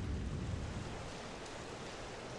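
Steady outdoor ambience of wind and water, a low even rush that eases slightly after the first second.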